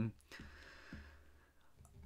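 Faint breath, then a few soft clicks from a computer mouse as a web page is scrolled.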